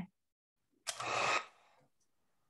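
Handheld heat gun being switched on to fuse encaustic wax: a short burst of blower hiss about a second in that cuts off after about half a second.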